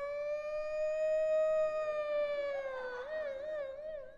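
A man imitating an ambulance siren with his voice: one long held wail that rises slightly and sinks back, then breaks into a quick wavering warble for the last second.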